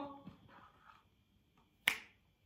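A single sharp finger snap near the end.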